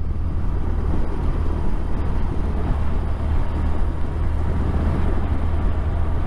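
Touring motorcycle riding along a wet road: a steady low engine hum under an even rush of wind and road noise.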